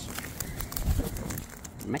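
Sulphur-crested cockatoos cracking and crunching seed with their beaks at a plastic feeding tray: a quick, irregular run of small cracks and clicks, with a low thump about a second in.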